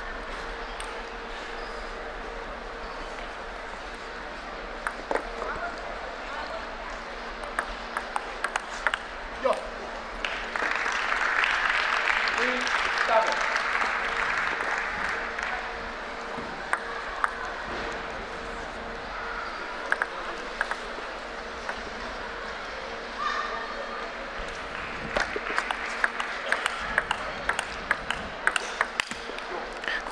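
Table tennis ball clicking off rubber paddles and the table, as scattered single strikes early on and then a quick run of strikes near the end as a rally is played. A few seconds of crowd applause swell up about a third of the way in.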